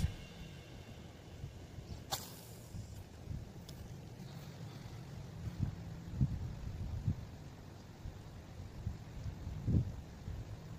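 Wind buffeting the microphone in low, uneven gusts, with one brief sharp swish about two seconds in as a spinning rod is cast and the line runs out.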